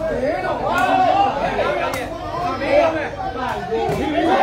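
Crowd chatter: many spectators' voices talking and calling over one another, with a few short sharp knocks.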